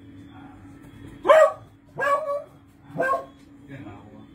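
A dog barking three times, about a second apart, with a fainter fourth bark near the end.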